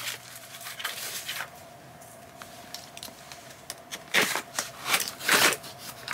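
Paper and cardboard packaging rustling and crinkling as a gift box is opened by hand, with louder rustles about four seconds in and again near the end.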